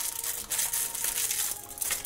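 Clear cellophane candy bag crinkling as fingers handle it, a steady crackle that stops just before the end.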